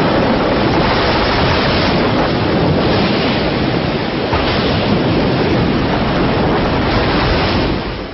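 Storm at sea: heavy waves and wind making a loud, dense, steady rush that fades out near the end.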